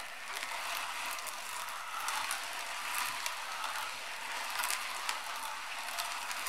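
Very old hand-cranked meat grinder crushing roasted sunflower seeds into meal: a steady gritty grinding dotted with many small cracks and clicks.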